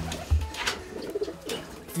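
Pigeons cooing softly, with the last of the guitar music dying away at the start.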